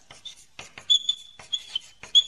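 Felt-tip marker pen writing on a smooth surface: short scratchy strokes, with high squeaks on several strokes from about a second in.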